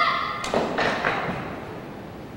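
The tail of a child's high shout, then three sharp cracks in quick succession, about half a second in and close together after, echoing briefly: boards breaking under taekwondo strikes.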